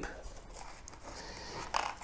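Faint handling noise: a light rustle and scrape of cardboard and plastic packaging as the box's contents are handled.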